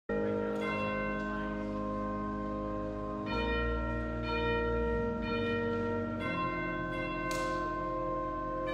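Church bells ringing, struck about once a second, each note ringing on and overlapping the next.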